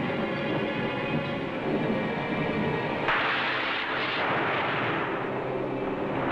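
Dramatic film score music with sustained tones; about three seconds in, a sudden loud crash of noise breaks in over it and dies away over about two seconds.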